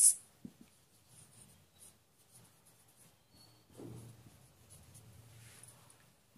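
Marker pen writing on a whiteboard: faint, intermittent strokes, the strongest about four seconds in.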